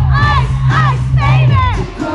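Live amplified pop music with a steady heavy bass, with high-pitched screams and shouts from fans close to the stage loud over it. The bass drops out briefly near the end.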